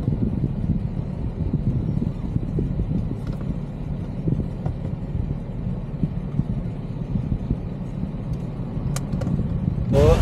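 A car engine idling, heard from inside the cabin as a steady low rumble, with a couple of faint clicks near the end.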